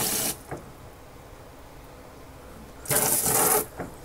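Short bursts of water from a pistol-grip sink spray nozzle on its jet setting, washing sphagnum moss off orchid roots. One burst ends just after the start, and a second, under a second long, comes about three seconds in.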